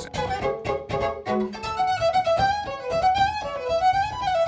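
Electric violin played with a traditional horse-hair bow: quick, short, choppy strokes for about the first second and a half, then a flowing melody with slides between notes.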